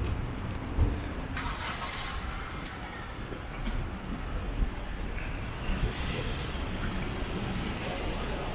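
City street ambience: a steady low hum of car engines and traffic, with a short hiss about a second and a half in.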